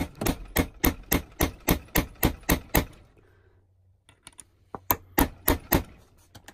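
Hammer striking a punch against the staked lip of the saildrive shaft's bearing retaining nut to free it, metal on metal: a run of about eleven quick, even strikes at roughly four a second, a pause, then four more near the end.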